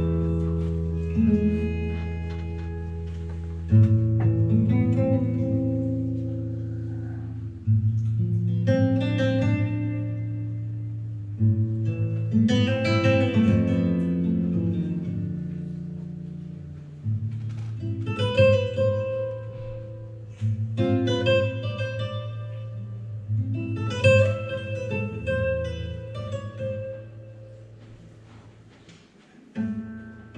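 Tango played live by a duo: acoustic guitar plucking chords and melody in phrases that ring out and fade, over long held low notes.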